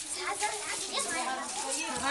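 Several people talking over one another at close range, children's voices among them.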